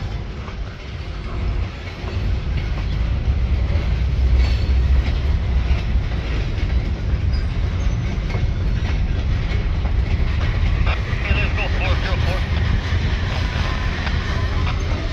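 Freight cars of a passing CN train rolling along the track: a steady low rumble of wheels on rail with occasional clicks over the rail joints.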